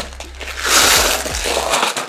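Small screws and parts rattling and sliding in a clear plastic compartment organizer box as it is handled and searched through, a dense clattering rustle from about half a second in until just before the end.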